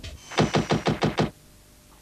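A rapid burst of about nine sharp knocks or clicks, roughly ten a second, lasting under a second and stopping abruptly.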